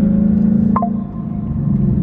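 2024 Ford Mustang GT's 5.0 L V8 heard from inside the cabin through a new Corsa cutback exhaust in its normal mode, a steady deep drone at low cruising speed. The note eases slightly in level about a second in.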